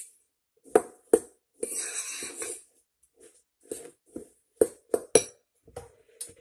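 A metal spoon stirring a damp rolled-oat mixture in a ceramic bowl: short gritty scraping strokes and several sharp clinks of the spoon against the bowl.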